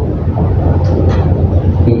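Steady low rumble with a faint hiss, with no distinct event in it.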